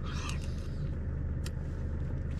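Steady low engine rumble in the background, with a couple of faint clicks while a man eats from a food pouch with a spoon.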